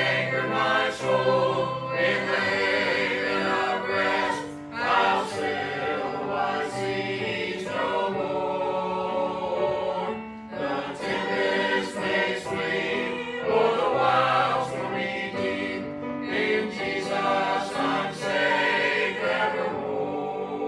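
Mixed church choir of men and women singing a gospel hymn together, with sustained notes that change every second or so.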